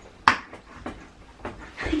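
A spinning mystery-wheel dartboard: one sharp click about a quarter second in, then a few faint, irregular clicks, and a low thump near the end.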